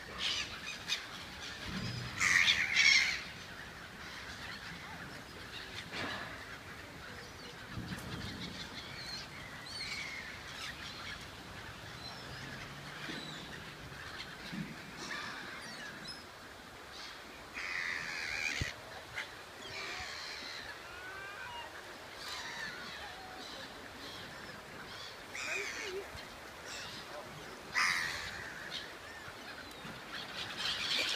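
A flock of gulls calling over and over, with louder bursts of calls a couple of seconds in, about halfway, and near the end.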